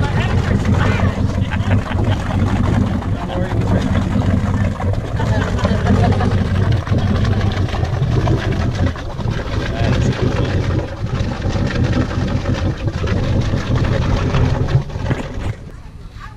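Inboard engine of a classic Century runabout idling at the dock, a steady low burble that stops shortly before the end.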